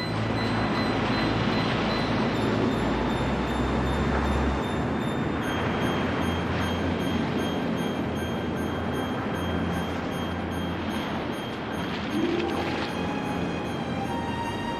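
Ocean surf breaking and washing onto a sandy beach, a steady rushing roar. Held notes of orchestral score sound quietly underneath and change chord about two and five seconds in.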